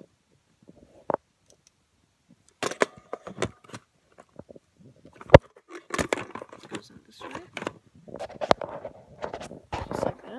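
Handling noise from packing an old Polaroid camera and its parts into a leather carrying case: irregular knocks, clicks and rustling, with a sharp click about halfway through and another near the end.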